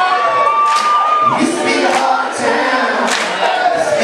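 Live band recorded from within the audience: a singer holds a long high note for about a second before it falls away, over the band's music with recurring crashes and a cheering crowd.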